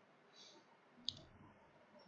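Near silence broken by a single computer mouse click about a second in.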